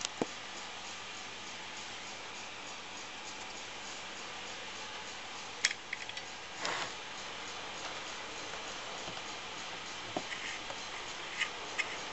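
Quiet steady hiss broken by a few isolated sharp clicks and one short scrape about two-thirds of the way through: small handling noises from a plastic tub and tools being set in place under a small engine's oil drain plug.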